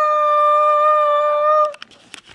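A woman's voice holding one long, steady sung note for nearly two seconds, then breaking off.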